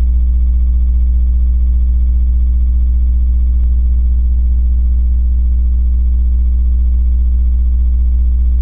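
A loud, steady, low electrical hum with a ladder of evenly spaced overtones, and a single faint click about three and a half seconds in.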